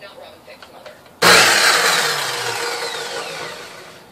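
Kobalt sliding miter saw's motor switched on with a sudden loud start about a second in, then winding down, its whine falling slowly in pitch and fading.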